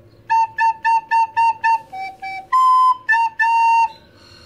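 Soprano recorder playing a short tongued phrase: six quick repeated A's (la), two lower F-sharps, a longer higher note, then two more A's, the last one held.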